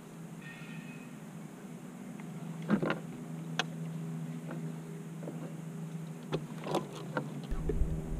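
Steady low electric hum, typical of a boat's trolling motor holding position, with a few short sharp knocks, such as tackle on the boat deck, about three seconds in and again near the end.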